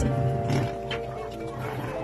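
Background music: sustained chords that change once or twice, with a few faint clicks.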